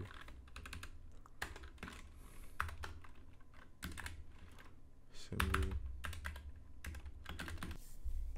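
Typing on a computer keyboard: irregular runs of keystrokes with short pauses between them. A brief low hum comes a little past the middle.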